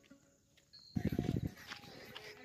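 A brief, rapidly pulsing animal-like call, loud for about half a second starting about a second in.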